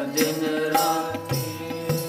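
Sikh keertan music: a harmonium (vaja) holding sustained notes, tabla strokes about every half second, and a man singing.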